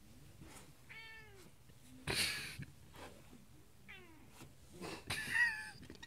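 Domestic cat meowing in short, arching calls, one about a second in and another around four seconds, with a loud breathy burst in between and a louder, breathier call near the end.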